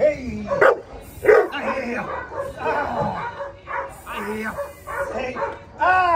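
A young dog barking in sharp bursts, with yelps, while being worked up in protection-training agitation; the loudest barks come at the start and about a second in.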